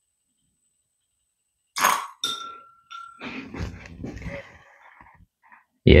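Stainless steel syringe and thin tubing being handled after drawing oil. It starts with a sudden hiss and a short steady whistling tone, then a couple of seconds of scraping and clinks as the syringe is lifted out.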